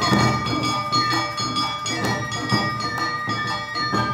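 Live Awa odori dance music from a narimono ensemble. A ringing metal kane gong and drums strike about twice a second, under held melody tones from flute and strings.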